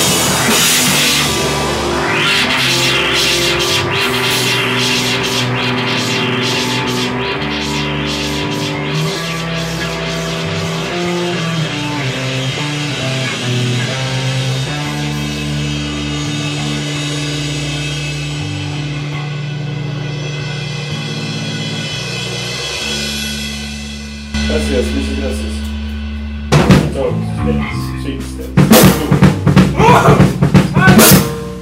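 A rock band playing live with drum kit, bass and guitar in steady changing chords. Near the end the music breaks into loud, separate drum and cymbal hits.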